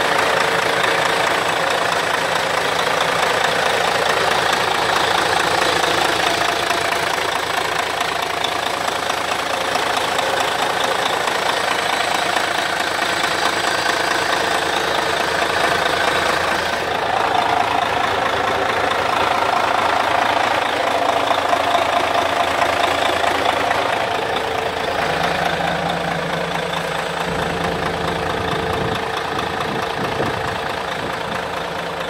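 Diesel engine of a 2008 Hyundai Universe coach idling steadily, heard up close at the open rear engine compartment.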